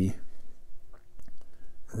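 A few faint, small clicks and ticks from the plastic parts of a fountain pen being handled, as the nib-and-feed unit is lined up with the key in the pen's section. A man's voice trails off at the start and comes back near the end.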